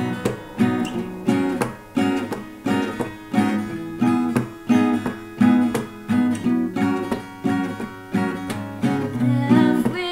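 Two acoustic guitars strumming chords together in a steady, even rhythm: the instrumental opening of a song just after the count-in.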